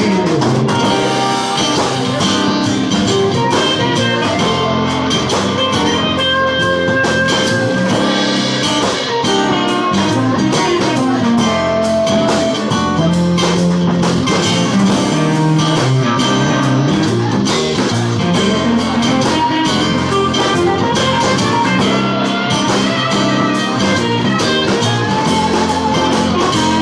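Live band playing an instrumental passage: two acoustic guitars strummed and picked over a steady drum beat.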